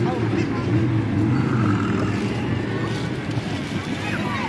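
Indistinct voices over steady, low outdoor background noise.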